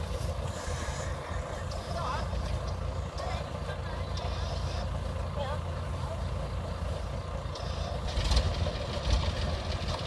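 Diesel engine of a Kubota DC70 combine harvester running steadily in a low rumble, a little louder near the end, with faint voices over it.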